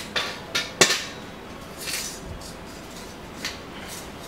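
Metal clanks and knocks of a motorcycle rear paddock stand being set under the swingarm to lift the rear wheel. Several sharp clanks come in the first second, the loudest just under a second in, followed by a few fainter knocks.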